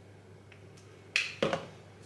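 A person sniffing hand sanitizer held to the nose: quiet at first, then two quick, sharp sniffs about a second in.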